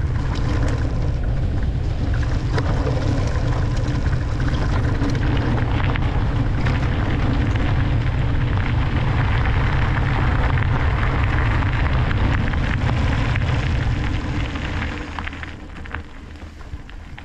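Wind rushing over the camera microphone together with the knobby tyres of an e-mountain bike rolling fast over grass and then gravel. The sound is a loud, steady rumble that drops off shortly before the end as the bike slows.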